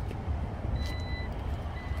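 An electronic beeper sounding a steady high tone in beeps about half a second long. The first starts about three-quarters of a second in and a second follows near the end, over a low rumble.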